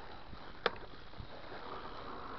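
Mountain bike rolling downhill on a dirt forest trail: a steady rush of tyre and riding noise, with one sharp knock from the bike a little over half a second in.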